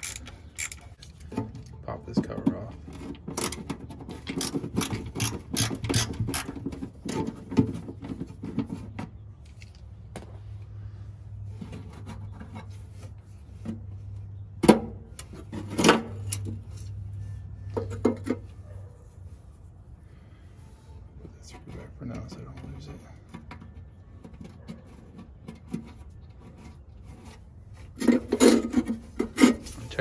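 Hands and tools working on the rusty steel underside and front trunk of a classic VW Beetle. A dense run of clicks, scrapes and rubbing fills the first nine seconds, then scattered sharp knocks come over a steady low hum.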